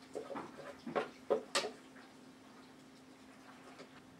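Wooden spoon scraping and knocking mashed potatoes out of a pot into a glass bowl: a few short scrapes and knocks in the first second and a half. After that only a low steady hum is left.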